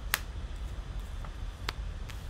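Two sharp clicks about a second and a half apart, as cards are snapped down and turned over on a table, over a low steady hum.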